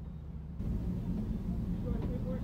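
Steady low rumble of background noise heard from inside a car, a little louder with more hiss from about half a second in, with a faint distant voice near the end.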